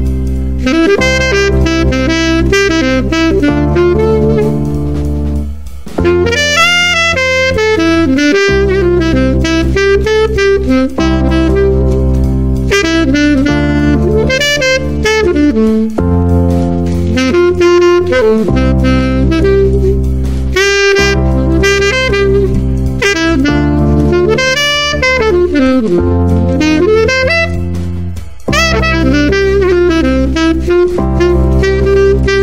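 Saxophone improvising jazz phrases over a backing track of sustained chords that change every couple of seconds, moving through the diatonic I, ii and IV chords of C major. The saxophone plays rhythmic lines on the notes of each chord, with brief breaks between phrases.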